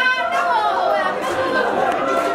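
Crowd chatter: several voices talking and calling out over one another at a joyful greeting, with a high voice calling out right at the start.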